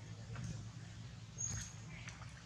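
A macaque gives one brief, thin, high squeak about one and a half seconds in, over a steady low hum.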